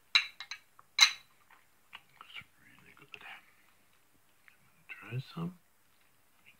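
Metal fork and knife clinking against a ceramic bowl: two sharp clinks in the first second, then a few lighter taps.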